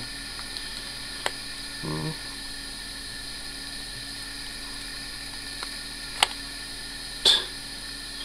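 A few sharp plastic clicks over a steady hiss, the loudest near the end, as fingers pry at the back cover of a Motorola C350 mobile phone; the cover is stuck and will not come off.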